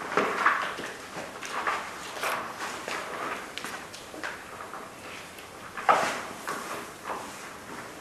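Irregular knocks, taps and scraping of objects being handled, with a louder knock at the start and another about six seconds in.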